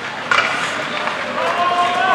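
Live ice hockey rink sound: a sharp knock about a third of a second in, then a drawn-out shout in the last second over the steady noise of play in the arena.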